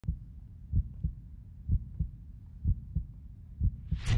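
Heartbeat sound effect: low double thumps, the first of each pair louder, repeating about once a second.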